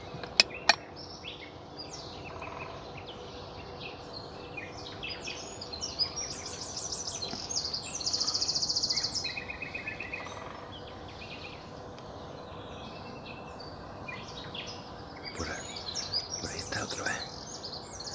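Several wild songbirds singing and calling in trees, with a loud, rapid trill lasting about a second around eight seconds in. There are two sharp clicks just after the start.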